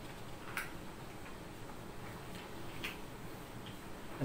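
Faint, irregular small clicks, about five of them, over low room noise.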